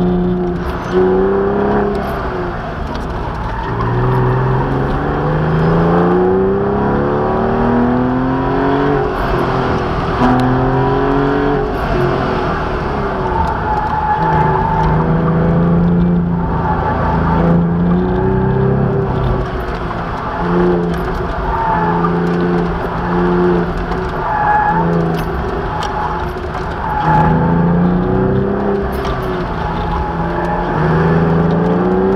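A car's engine, heard from inside the cabin, driven hard on a coned autocross course: it revs up again and again through the gears in the first half, then the revs rise and fall in short bursts while the tyres squeal briefly in the turns.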